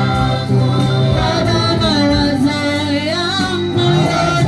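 Gospel worship music: several voices singing long, wavering notes over a steady low accompaniment.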